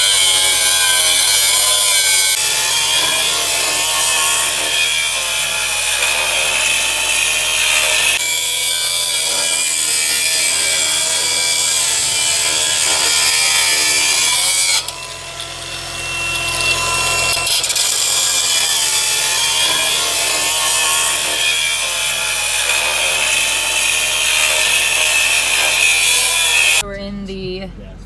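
Angle grinder grinding and cutting steel, its whine wavering in pitch as the disc bites into the metal. It dips quieter for a couple of seconds about fifteen seconds in and stops shortly before the end.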